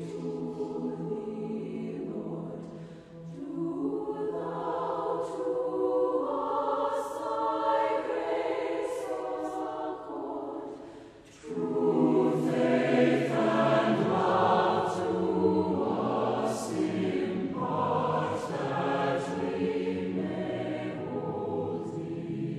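Mixed choir of men's and women's voices singing a Christmas hymn arrangement. The sound nearly stops just after the middle, then comes back louder and fuller, with the low voices strong.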